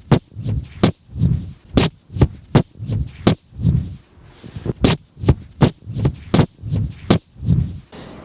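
Footsteps of a person running across snow-covered ice, heard close: a string of low thumps and sharp crunches, one every half-second or so.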